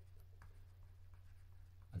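Faint scratches and light taps of a stylus writing on a tablet, over a low steady electrical hum.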